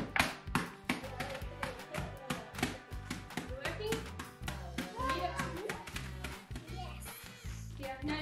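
Background music with hands repeatedly slapping and pressing a plastic zip-lock bag of biscuits on a wooden bench, crushing them.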